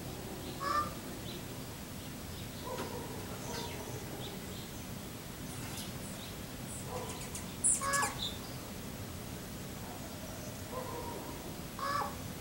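A raven giving a few short caws, spaced seconds apart and loudest about eight seconds in, with small songbird chirps between them. The recordist hears the raven's calls as a warning that a hawk is near.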